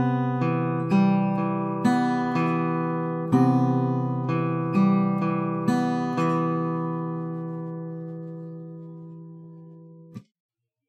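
Eastman AC-508 acoustic guitar played fingerstyle in a Travis-style hybrid-picked pattern, pick on the bass strings and fingers on the treble, with notes plucked about twice a second. After about six seconds the last notes are left ringing and slowly fade, then are stopped near the end.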